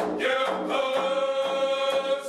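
Group of men singing a chant together, holding one long note, with a single beat of a hand frame drum as the note begins.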